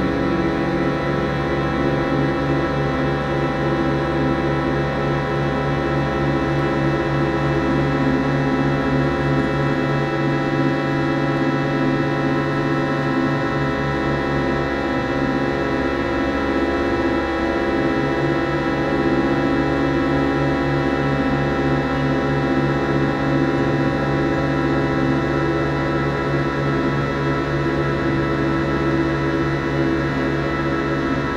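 Ensemble drone music: many steady held tones layered into a dense, slowly shifting chord with no beat. The lowest layer thins out for a few seconds about ten seconds in.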